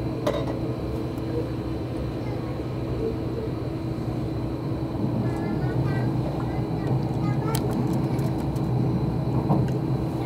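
Inside the cabin of an Odakyu limited express electric train running at speed: a steady low rumble with a constant hum, growing a little louder in the second half. A few sharp clicks stand out, one just after the start and one about seven and a half seconds in.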